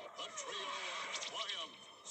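A cartoon horse whinny, its pitch wavering down and then rising sharply before it fades, played through a television speaker.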